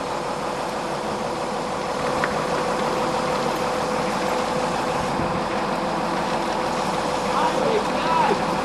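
Diesel engine of a large forklift loader running steadily, a constant drone with a thin steady whine over it.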